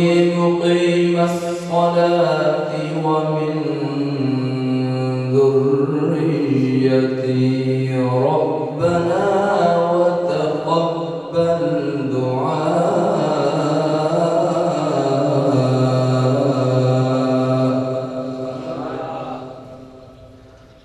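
A man reciting the Quran in the melodic tilawat style, his voice drawing out long held, ornamented notes in one long phrase that dies away near the end.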